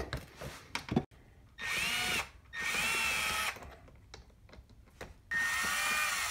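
Cordless drill/driver turning screws in a wooden molding flask: three short runs of motor whine, each rising and then falling in pitch. A couple of sharp clicks come in the first second.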